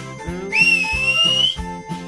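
Children's cartoon background music with a steady beat. About half a second in, a whistle sound effect comes in over it and rises slowly in pitch for about a second.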